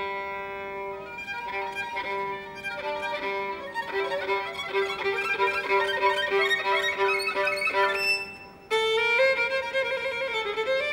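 Solo violin playing a slow, expressive tango melody, with a steady lower note sounding beneath it for most of the time. The phrase fades a little after eight seconds, and a louder new phrase begins just before the end.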